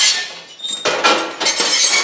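Metal frame and glass pane of a Whirlpool oven door scraping and clinking against each other as they are slid into the door. There is a short grating scrape at the start, then a longer one from about a second in.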